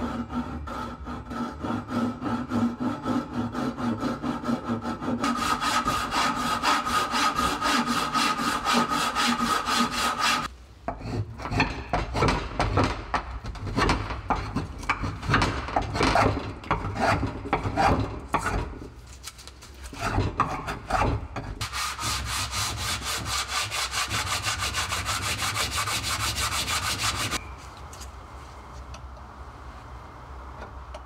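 Hand saw cutting through wood held in a bench vise in quick back-and-forth strokes, followed by passages of hand-tool shaving and rasping strokes on the wood, with short pauses between passages.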